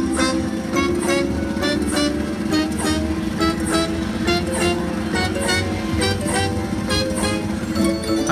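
Lock It Link slot machine playing its bonus-feature music, with a steady beat, while the total-win meter counts up.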